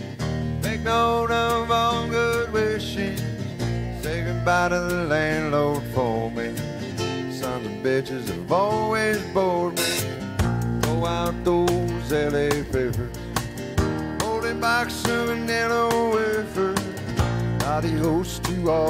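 A country band playing live: strummed acoustic guitar, bass and drums, with a lead line of bending, sliding notes over them.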